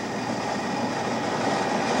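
Water at a rolling boil in an enamel stockpot, with a whole cabbage head blanching in it: a steady rushing bubble that grows slightly louder.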